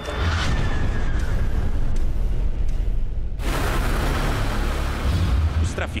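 Large stones thrown down from higher ground crashing and tumbling, a loud booming rumble with a second surge a little past halfway. The boulders are thrown on purpose so that the crash sounds like an explosion.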